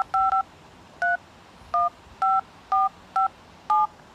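Touch-tone (DTMF) keypad beeps from a Motorola Moto E's dialer as digits are tapped in: about eight short two-note beeps at an uneven pace.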